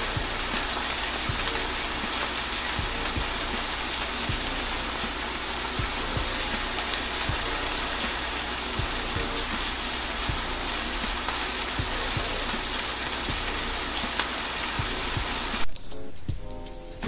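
Heavy rain falling steadily, a dense hiss with many single drops striking close by. It cuts off suddenly near the end.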